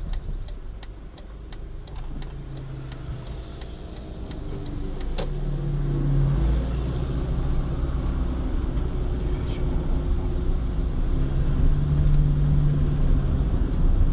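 Car engine and road noise heard from inside the cabin on a climbing road, as motorcycles pass the car and ride on ahead. The sound grows louder about five seconds in, and there are a few light ticks in the first couple of seconds.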